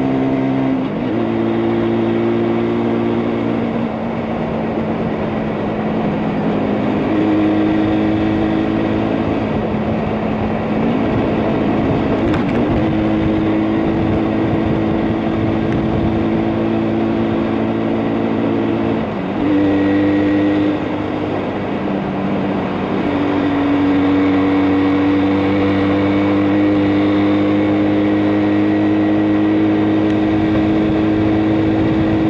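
Stock 1973 Yamaha RD350's air-cooled two-stroke parallel twin running under way, heard from the rider's seat. Its note holds steady, then steps to a new pitch several times, over a constant rush of wind noise.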